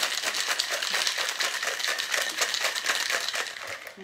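Ice rattling hard inside a Boston shaker, a mixing glass sealed into a metal tin, shaken vigorously to chill and mix a cocktail: a rapid, even rattle that eases off near the end.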